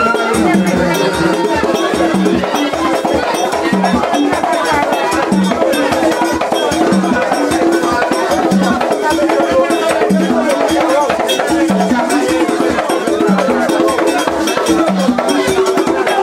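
Vodou ceremonial drumming: a dense, steady pattern of sharp hand-drum and wood strikes over a lower drum note about every second and a half, with a group of voices singing along.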